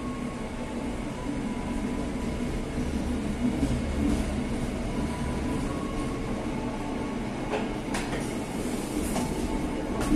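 Passenger train pulling slowly away from a station, heard from its rear carriage: a steady low rumble of wheels on rail with a faint hum, and a few sharp clicks near the end.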